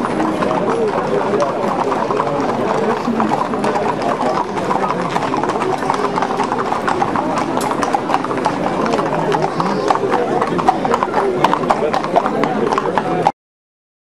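Hooves of many Camargue horses clip-clopping on a paved street at a walk, the hoofbeats sharper and louder in the last few seconds, with crowd chatter throughout. The sound cuts off suddenly near the end.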